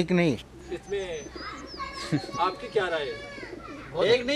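Several men's voices talking over one another, with birds calling in the background.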